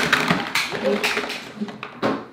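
A cardboard toy box and a large plastic toy ship being handled: rustling, scraping and knocks as the box is pulled up off the toy. Excited vocal exclamations mixed in.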